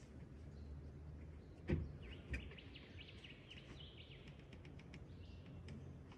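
Faint forest ambience with scattered high bird chirps, and two soft knocks about two seconds in.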